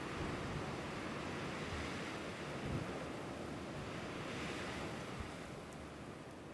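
Surf washing on a beach: a steady rush of waves with a slight swell about four seconds in, slowly fading down near the end.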